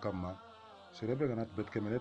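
A man's voice speaking in a recited, preaching delivery, broken by a short pause about half a second in before he carries on.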